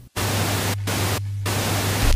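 Television static: a loud, even hiss that breaks off briefly twice, over a steady low hum, as a sound effect for an old TV screen flickering.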